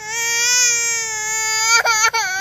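Toddler girl crying: one long wail held at a steady pitch, breaking off briefly near the end and then going on.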